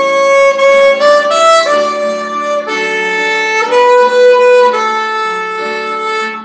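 Solo violin playing a slow hymn melody in long bowed notes, each held about half a second to a second, often with a lower note sounding under the melody.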